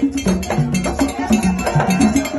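Live hand drumming in a fast, steady rhythm, with a maraca shaking along.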